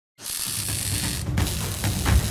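Short logo-intro sound design: a loud whooshing wash of noise that starts suddenly, with deep booming hits beneath it, one about one and a half seconds in.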